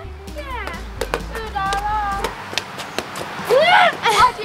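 A rubber playground ball swatted by hand and bouncing in a gaga ball pit: a string of sharp slaps and knocks, mixed with girls' short squeals and a loud shout near the end.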